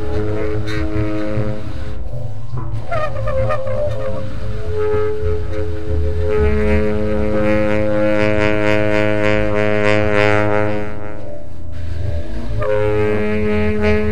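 Free-improvised avant-garde jazz: a tenor saxophone holds long notes over a continuous low bass rumble. The notes break off briefly about two seconds in, with some bending pitches, before the long tones resume.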